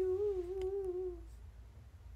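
A young woman's voice holding one slightly wavering note, a hum drawn out from the end of her words, that fades away about a second and a half in.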